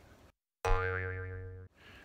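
A comedy sound effect edited into the track: one pitched tone, rich in overtones, that starts abruptly after a moment of dead silence, fades over about a second and cuts off sharply.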